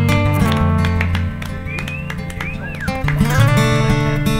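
Acoustic guitar played solo, strummed and picked in an instrumental passage between sung verses. The low bass notes drop out about a third of the way in and the playing goes quieter for a moment, with a few short high gliding sounds near the middle, before it picks up again.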